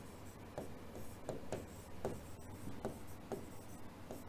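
A pen writing on a white board: faint, short scratching strokes, about two a second, as words are written by hand.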